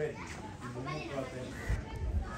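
Indistinct voices of people talking, with a low rumble on the microphone starting near the end.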